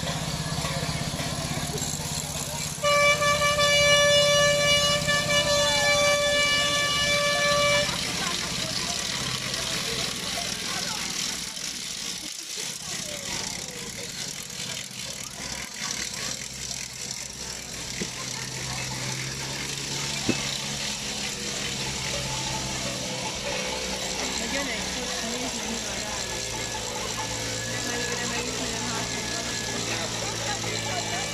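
A horn blown in one long, steady, loud note for about five seconds, starting about three seconds in, over the chatter of a crowd.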